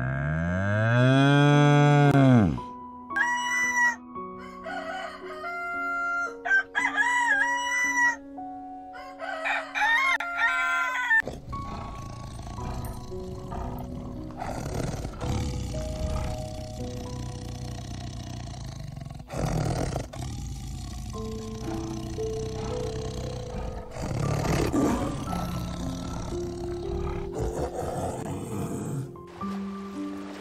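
Animal calls: one long, loud call that rises and falls in pitch, then a run of shorter, higher calls. From about eleven seconds in, background music with held notes takes over.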